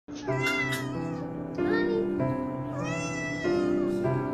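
Domestic cat meowing three times, the third call the longest, over soft background music.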